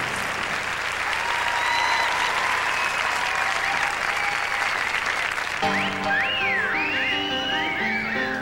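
Audience applauding steadily. About two-thirds of the way through, swing dance music starts with sliding melodic notes over the clapping.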